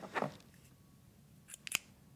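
Scissors being picked up and handled, with a few short sharp clicks of the blades and pivot about one and a half seconds in, after a soft brief handling sound near the start.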